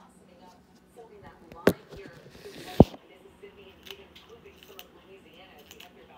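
Handling noise as the phone is picked up and moved: two sharp knocks about a second apart, the second the louder, with a brief rustle just before it.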